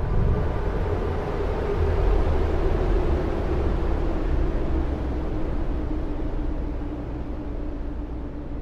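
A deep, steady rumbling drone with a faint hum above it, swelling over the first couple of seconds and then slowly easing off: a sound-design rumble laid under animated title cards.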